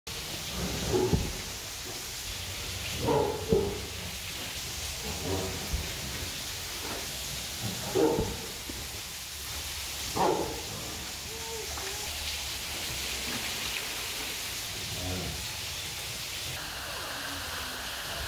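Tiger snarling and growling in short bursts, about six times, over a steady background hiss.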